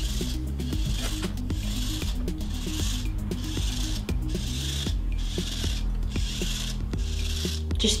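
Background music with a steady beat, mixed with the mechanical sound of Anki's Cozmo toy robot driving forward on its treads as a looped program repeats.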